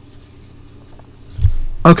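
Quiet room tone with a low hum and a few faint clicks, a soft low thump about one and a half seconds in, then a man says "okay" at the very end.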